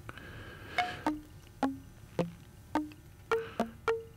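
Eurorack modular synth sequence played through an After Later Audio In Rings resonator module: about eight short plucked notes in F major, each with a sharp attack and a brief ring, hopping between pitches about twice a second.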